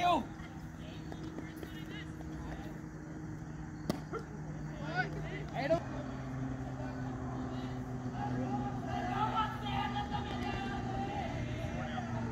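An engine running steadily with a low hum, which steps up slightly in pitch about six seconds in, under faint distant voices. A single sharp knock comes about four seconds in.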